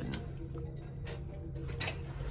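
A few sharp clicks from a cabin door's key-card lock and lever handle as the door is unlocked and opened, the clearest about a second in and another near the end, over a faint steady low hum.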